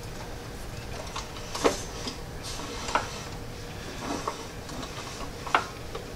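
Light metallic clicks and knocks from a steel shaft coupler on an engine's output shaft as it is turned and shifted by hand to line up its key. There are three clear clicks, the loudest near the end.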